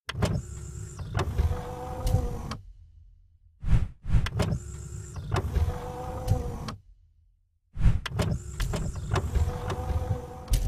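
Mechanical whirring sound effect of a small electric motor, with a steady hum and sharp clicks. It runs in three similar stretches of about two and a half seconds, separated by short gaps, with a brief swish in the first gap.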